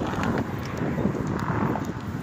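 Wind noise on a phone's microphone: an uneven rustling rumble.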